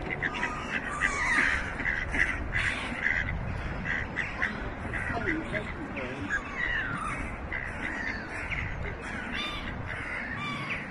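Birds calling outdoors: many short calls in quick succession throughout, over a steady low background noise.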